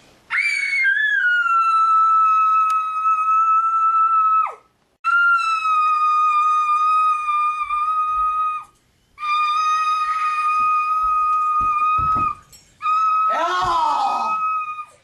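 A loud, high-pitched held note sounded four times, each three to four seconds long at the same steady pitch with short breaks between; the first slides down as it ends. A shout breaks in over the last note.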